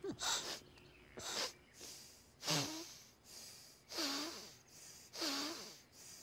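A person sniffing and snorting hard through the nose in about six short bursts, roughly a second apart, some ending in a brief voiced grunt: an imitation of a muntjac deer's sniffing, closing the nostrils between sniffs.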